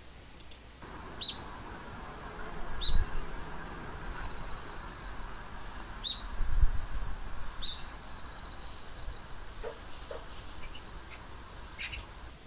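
Short, sharp bird calls repeating every second or two over a steady hiss, with two low thumps of wind or handling on the microphone.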